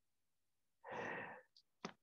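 A man's single breathy sigh, about half a second long, in the middle of a near-silent pause, followed by a faint click near the end.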